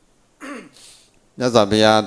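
A monk's voice through a microphone during a sermon in Burmese: a short pause, a brief throat-clear and breath, then speech resumes about a second and a half in.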